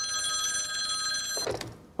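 Desk telephone ringing in one long, steady ring that stops about a second and a half in as the handset is picked up with a brief clatter.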